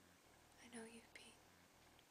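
A brief soft, whispery voice speaking a word or two just under a second in, ending in a small click, with near silence around it.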